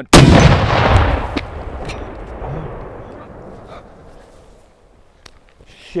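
An RPG-7 rocket launcher exploding at the shooter's shoulder as it is fired: one sharp, very loud blast, followed by a rumbling echo that dies away over about four seconds.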